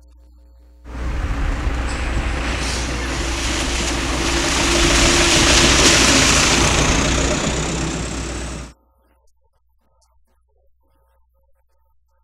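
A heavy truck driving by on a wet, muddy dirt road: a loud rush of engine rumble and tyre noise that comes in about a second in, swells to a peak around six seconds and cuts off abruptly near nine seconds.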